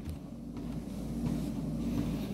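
A steady low hum with no speech.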